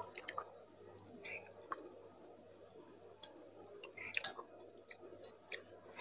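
Faint, sparse wet mouth clicks and smacks of someone chewing and tasting instant noodles, with a slightly louder smack about four seconds in.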